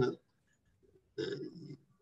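A man's voice in short pieces: a word trails off at the very start, and after about a second's pause comes a short, low voiced sound of about half a second.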